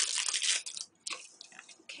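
A small bag crinkling as it is handled and opened, dense for about the first second, then a few light rustles and clicks.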